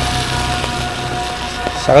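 A motorcycle passes on a wet road, its engine sound fading away within the first half second, over a steady hiss of rain.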